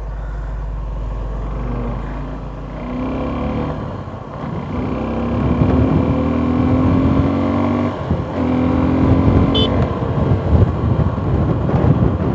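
Suzuki 249 cc single-cylinder motorcycle engine accelerating hard, its pitch climbing in each gear with two upshifts, about four and eight seconds in.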